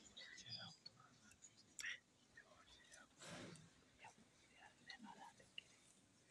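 Near silence: faint whispering and low murmured voices from people seated close by, with a short soft noise about three seconds in.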